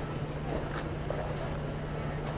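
A steady low hum over a rumbling background.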